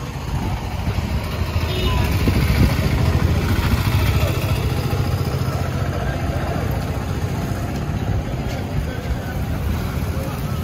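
Motorcycle taxi engines running close by, a steady low rumble, with voices in the background.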